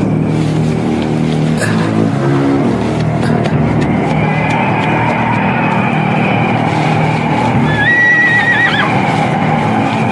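A horse whinnies once about eight seconds in: a high, wavering call that breaks downward at its end. Under it runs a low, sustained music score and a noisy rush that builds from about halfway through.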